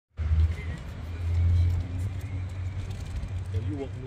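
Steady low rumble of a car moving through a parking lot, road and engine noise. A man's voice starts just before the end.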